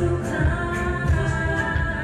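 A woman singing into a microphone over loud amplified pop music with a heavy bass beat.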